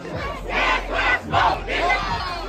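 A crowd of people shouting together in four loud bursts, like a chant or yelling along at a party.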